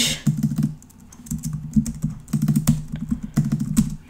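Typing on a computer keyboard: quick runs of keystrokes with a short pause about a second in.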